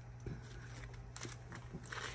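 Faint rustling and a few light taps of paper dollar bills and clear plastic envelopes being gathered and stacked by hand, over a low steady hum.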